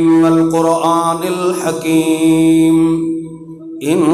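A man's voice chanting in a long, drawn-out melodic line over a microphone, holding one steady note with the pitch swelling and bending above it. The chant breaks off briefly near the end, then picks up again.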